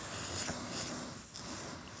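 Handheld camera being slid along a lab tabletop: an uneven rubbing and scraping of handling noise.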